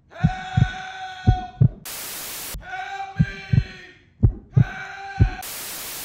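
Heartbeat sound effect: paired low thumps about once a second over a sustained droning tone. It is broken twice by short bursts of white-noise static, once about two seconds in and again near the end.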